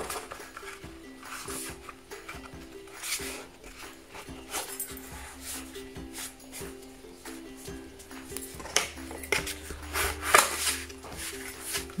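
Quiet background music, a simple melody of held notes, with a few brief paper rustles and rubs as the folded watercolour-paper booklet is pressed flat by hand.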